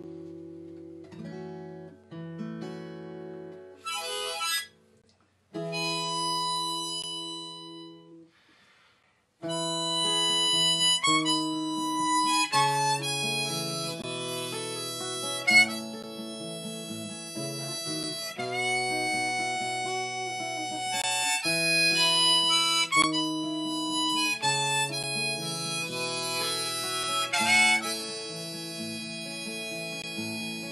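Harmonica in a neck rack and a capoed steel-string acoustic guitar playing the instrumental intro of a song. The first few phrases are broken by short pauses, then the playing runs on steadily from about ten seconds in.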